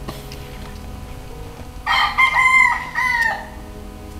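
A rooster crowing once: a drawn-out, multi-part call of about a second and a half, starting near the middle and dropping in pitch at the end.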